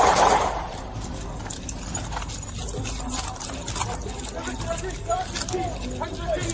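Police body-camera audio during a foot chase: a rushing noise that dies away in the first half-second, then scattered clicks and rustling of gear, with shouted voices near the end.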